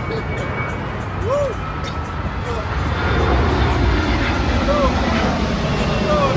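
Steady low rumble that grows louder about three seconds in, with a few short rising-and-falling chirps over it.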